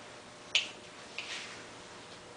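Two sharp, high clicks about two-thirds of a second apart, the second softer, from a small metal object being handled.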